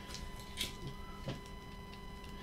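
Cardboard being handled: a few faint scrapes and light knocks, the loudest about half a second in and another a little after a second.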